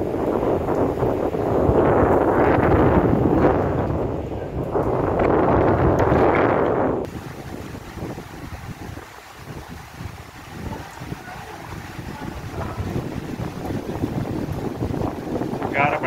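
Storm wind buffeting the microphone in loud gusts through an open window, cutting off suddenly about seven seconds in. After that, a quieter steady wash of heavy rain and hail with faint ticks.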